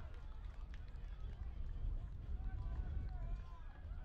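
Distant shouts and calls of rugby league players on the field, over a constant low rumble of wind on the microphone.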